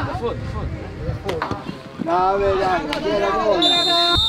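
Shouted calls from players and the bench carrying across a soccer pitch during a match. There are two sharp knocks a little over a second in, and a short, steady high whistle near the end.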